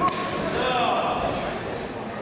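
One sharp slap at the very start, a strike landing on a sanda fighter's padded protective gear during an exchange at close range.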